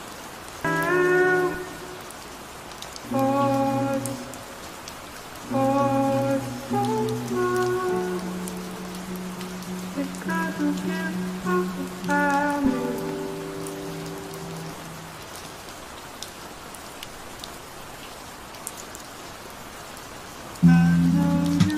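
Steady rain falling, under soft, sparse chords from a lo-fi track that come every couple of seconds, with one longer held note in the middle. The music fades out about three-quarters of the way through, leaving only the rain.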